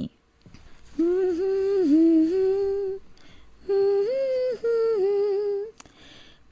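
A voice humming a tune without words, in two smooth phrases of about two seconds each with a short pause between them.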